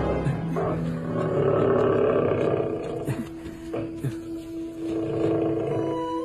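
A drawn-out tiger roar sound effect, loudest about two seconds in, over background music with a long held note.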